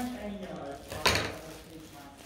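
Scissors snipping through a cord, then the metal scissors clattering down onto a wooden tabletop with one sharp knock about a second in.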